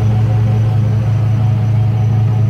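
Tow truck's engine running at a steady idle, a loud, even low hum.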